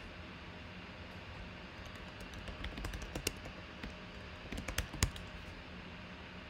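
Typing on a computer keyboard: an uneven run of key clicks starting about two seconds in, the loudest click near the end, over a steady low background hum.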